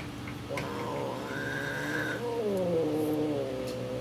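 Cat yowling a long, low, wavering threat call, starting about half a second in and dipping in pitch midway, in a territorial standoff between two cats.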